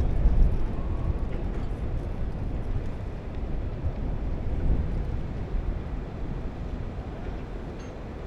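Low, uneven rumble of the Great Lakes freighter Arthur M. Anderson passing close by, slowly fading, mixed with wind buffeting the microphone.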